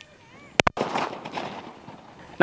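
Grenade-shaped village firecracker going off: two sharp cracks in quick succession about half a second in, followed by a noisy tail that fades away.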